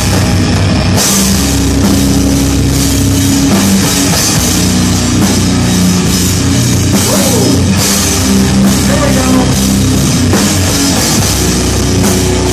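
Live heavy rock band playing loud: electric guitars, bass and a drum kit with steady drum and cymbal hits. The cymbals drop out for a moment within the first second, then the full kit comes back in.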